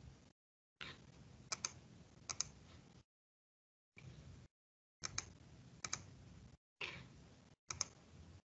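Faint computer input clicks, sharp and in close pairs a second or more apart, as entries are keyed into an on-screen calculator. A low background hiss cuts in and out between them.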